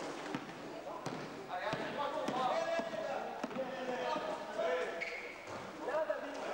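Basketball game play: players' voices calling out across the court, mixed with the ball bouncing and a few sharp knocks on the court floor.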